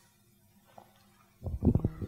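Near silence in a small room, then about a second and a half in a short cluster of loud low thumps and rumbling.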